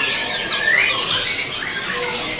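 Many caged songbirds chirping and whistling at once, high calls overlapping, with one clear rising whistle under a second in.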